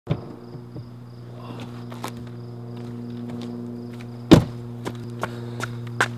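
Outdoor ambience of faint insects chirping in a regular pulse over a steady low hum, with scattered light knocks and one sharp, loud thump a little over four seconds in.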